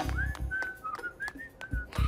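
A cartoon character whistling a short, casual tune: several high notes near one pitch, a few with small upward slides. A low thump sounds at the start and again near the end.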